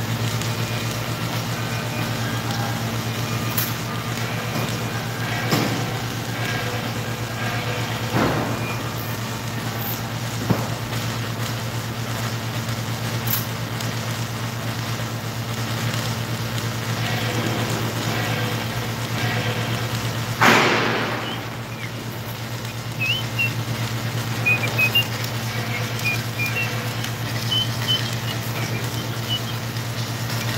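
Submerged arc welding tractor at work on a long seam: a steady low electrical hum with scattered clicks and pops, and one louder rushing burst lasting about a second, two-thirds of the way through.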